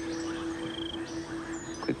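Quiet background ambience: a steady low hum held through, with a brief high chirping trill about half a second in, insect-like.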